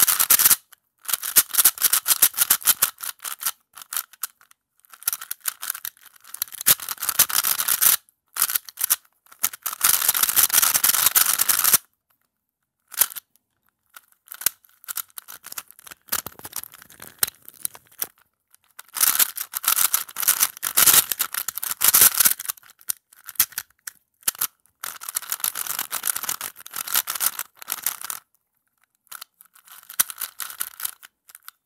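Plastic Rubik's cube being turned fast, its layers clicking and clattering in dense runs of two to three seconds with short pauses between them, with a sparser stretch of scattered clicks in the middle.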